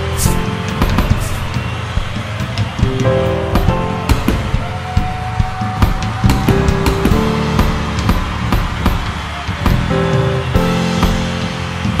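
Soundtrack music: held notes and chords that change every second or so, over frequent sharp percussive hits.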